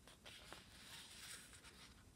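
Faint rustle of a paperback book being handled and lowered, paper and cover brushing, with a few light clicks.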